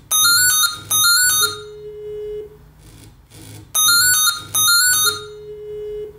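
An electronic alert tone: two short high chirps followed by a longer, lower held note, the pattern played twice. A low steady hum lies underneath.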